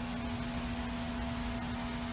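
Steady machine hum with a constant low tone and an even hiss over it, unchanging throughout.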